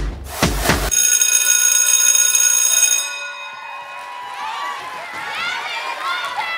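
A hip-hop dance track ends: its beat stops about a second in, leaving a held chord that fades away over about two seconds. Then the audience cheers, with high-pitched whoops and shouts.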